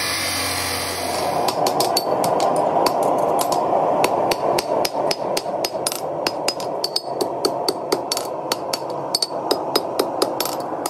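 An abrasive chop saw cutting through steel bar for a little over a second. Then a hammer forges a red-hot steel horseshoe on an anvil, with rapid, ringing blows about three or four a second.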